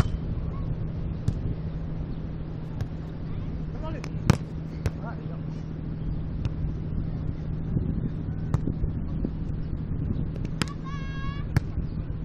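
Beach volleyball being hit back and forth in a rally: about six sharp slaps of hands and forearms on the ball, one to two seconds apart, the loudest about four seconds in, over a steady low background hum. A player gives a short high shout near the end.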